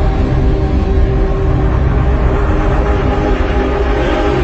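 Intro music: a deep, steady low rumble under long held notes.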